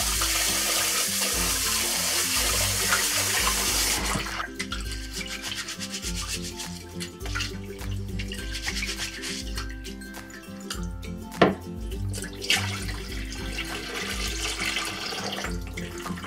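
Tap water running into a stainless steel pot of rice, cutting off about four seconds in. Then hands swish and rub the rice in the water to wash off the starch, with one sharp knock about midway, and water pouring out near the end. Background music plays throughout.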